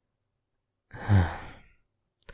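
A man's sigh about a second in: one voiced, breathy exhale that falls in pitch and fades out.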